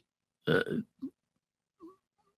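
A man's hesitant spoken "uh", followed by a brief vocal noise and silence.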